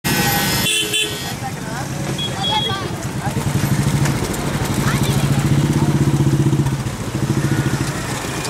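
Busy street traffic with a vehicle horn sounding for about a second at the start, then a motorcycle engine running close by from about three seconds in, loudest towards the end, over the voices of people around.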